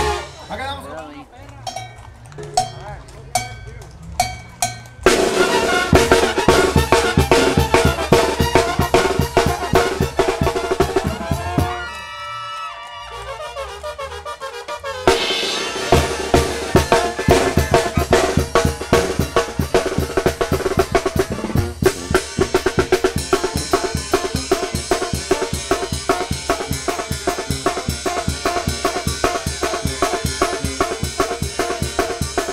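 Band music carried by a fast drum beat of snare, bass drum and cymbals. It starts sparse with a few single hits, runs dense from about five seconds in, breaks briefly for a few held notes about twelve seconds in, then resumes.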